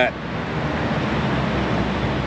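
Steady outdoor background noise, an even rushing sound with a low rumble and no distinct events.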